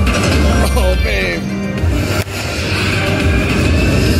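Cash Falls slot machine playing its free-spin bonus music and electronic sound effects as the reels spin, with a brief drop in level about halfway through.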